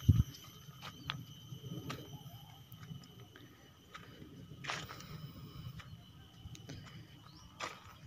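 Quiet field ambience of someone walking across dry furrowed soil with a handheld camera: a low handling rumble, light footsteps, and a few faint clicks and rustles. A faint, steady high-pitched tone runs underneath.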